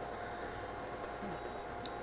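Currie Technologies 24-volt, 135-watt scooter motor running at half voltage (12 V) on a bench supply, spinning a 3D-printed drive wheel through an HTD-3M timing belt: a steady, quiet whir.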